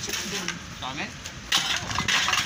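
Scrap clattering as it is tossed onto a pile, a sudden loud crash about one and a half seconds in, with lighter knocks of sorted junk around it.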